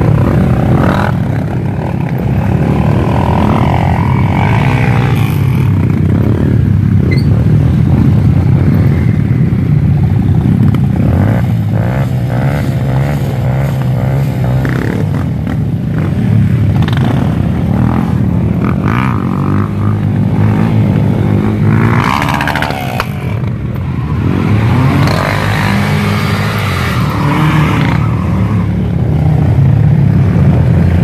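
Several motorcycle and quad-bike engines running close by in a group ride, loud and continuous, with the revs rising and falling.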